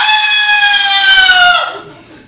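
A man's long, high-pitched yell into a microphone, held for about a second and a half with its pitch sagging slightly before it dies away: the word "Yale" drawn out as a yell after "welcome to".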